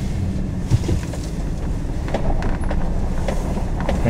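Pickup truck engine running steadily with tyre noise as it turns onto a gravel lane, heard from inside the cab. A brief knock comes about three-quarters of a second in.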